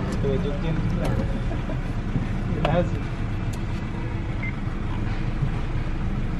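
Steady low rumble of car and traffic noise heard inside a car's cabin, with brief faint voices now and then.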